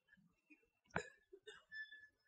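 Faint chalk writing on a blackboard, with one sharp tap about a second in.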